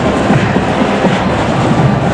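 A marching band's drumline playing a street cadence, with a steady rolling beat under general crowd and street noise.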